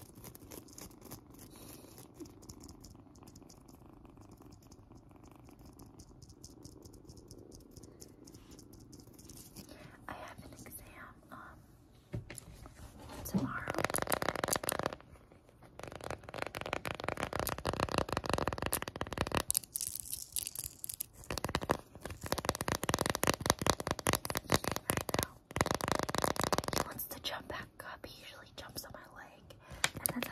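A kitten purring quietly and steadily close to the microphone. About halfway through, long acrylic nails start tapping and scratching fast on a flower-shaped plastic piece, in several long, louder runs.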